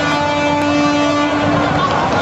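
A horn blowing one long, steady note that cuts off near the end, over the noise of a street crowd.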